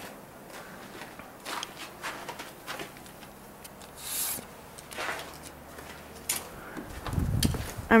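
Footsteps crunching in deep snow, a few short irregular crunches. Near the end, wind buffets the microphone with a low rumble.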